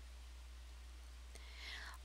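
Near silence between narrated sentences: a steady low hum and faint hiss, with a quiet intake of breath near the end.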